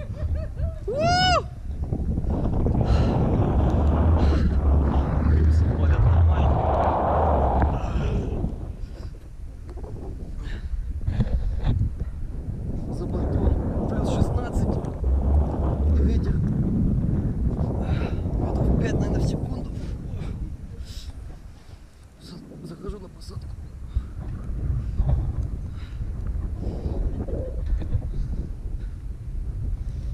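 Wind buffeting the microphone of a pole-mounted action camera on a rope jumper swinging on the rope, a rushing noise with deep rumble that swells and eases in long waves as the swing speeds up and slows. About a second in, a short high tone rises and falls.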